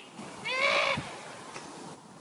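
A distant teenage boy's yell: one high, slightly wavering call lasting about half a second, followed by a short thud.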